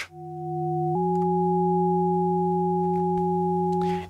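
A sine-oscillator synth patch in Bitwig's Poly Grid, stacked as three voices at different pitches, sounds a chord of pure sine tones. It fades in, steps up to a new note about a second in, and holds steadily.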